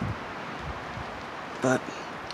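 Steady rustle of wind through the trees outside, with one short spoken word near the end.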